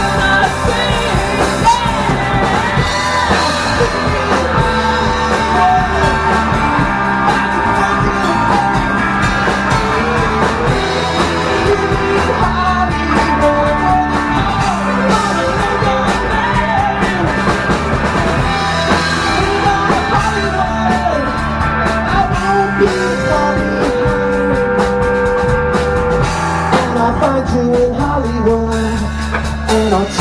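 Rock band playing live: electric guitars, bass guitar and a drum kit with crashing cymbals, with a man singing lead vocals over it.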